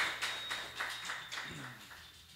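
A small audience clapping, fading out.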